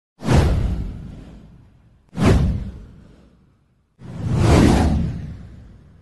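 Three whoosh sound effects of a title-card intro, each a noisy swish with a low rumble under it that fades away over about a second and a half. The first two hit suddenly; the third swells in more slowly near the end.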